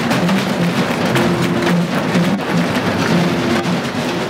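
Drum kit played in a fast solo: dense, continuous drum and cymbal hits with the low pitched ring of the toms, in a pattern that repeats about every two seconds.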